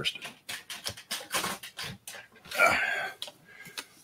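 Plastic water bottles being picked up and handled: a quick, irregular run of crinkles and clicks, with rustling from the reach down beside the chair.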